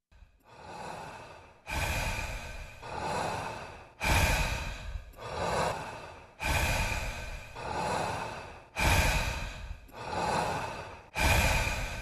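A person's heavy breathing, in and out, repeating about every two and a half seconds. Each cycle starts abruptly, and the first is fainter than the rest.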